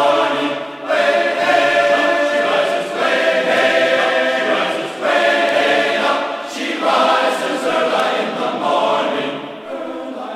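A choir singing as part of a music track, in phrases of about two seconds each.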